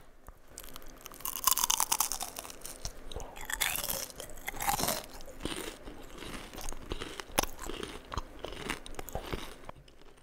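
Close-miked biting and chewing of crunchy fried food: crisp, crackling crunches, loudest just after the first bite about one and a half seconds in, then steady chewing.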